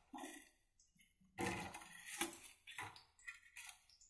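A few short, irregular scraping and clattering noises from a metal spatula handled against a steel kadhai of koftas frying in oil. The louder ones come in the middle and near the end.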